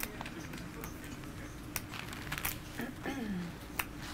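Clay poker chips clicking together a few times as a player handles her stack at the table, over low room murmur. A short falling vocal sound comes about three seconds in.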